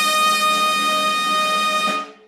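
Brass fanfare holding one long high note, which cuts off near the end.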